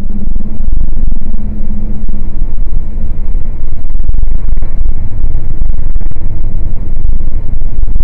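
Loud, steady low drone of a truck on the move, heard from inside the cab through a dashcam mic: engine and road noise, with a low hum that fades after about three seconds.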